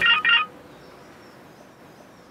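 Mobile phone message alert: a quick series of short, high electronic beeps that ends about half a second in.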